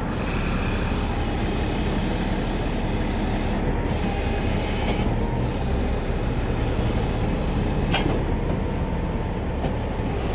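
Heavy tow truck's diesel engine running steadily with a low rumble, a faint steady whine above it, and a single sharp click about eight seconds in.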